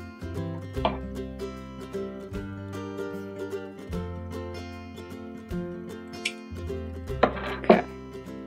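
Background music played on a plucked string instrument, with notes changing every second or so. Two short noisy sounds stand out near the end.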